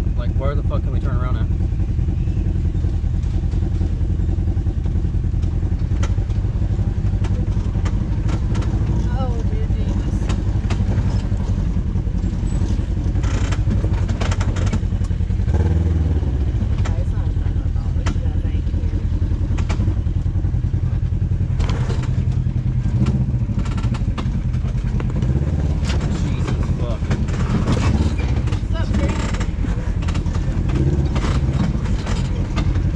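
Side-by-side UTV engine running steadily at low speed as the machine crawls over a rocky trail, with frequent knocks and clatter from the tyres and chassis working over rocks.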